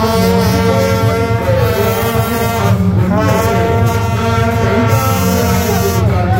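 Loud procession music: long held, horn-like notes that change pitch every two seconds or so, over a steady low rhythm.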